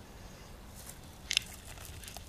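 A short, sharp crunch about one and a half seconds in, with a few fainter crackles around it, over a low steady rumble.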